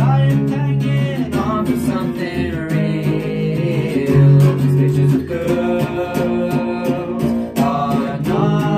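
Two voices singing over a strummed guitar and a violin-shaped electric bass in an indie rock song.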